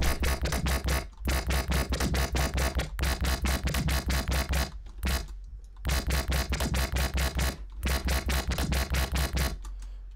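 Dubstep/electro synth bass loop playing in a rapid stuttering rhythm over a steady deep sub-bass tone, with a short break about halfway. The upper bass layer is EQ'd with a low cut near 200 Hz so it stays clear of the fundamental, while the sub tone carries the low end.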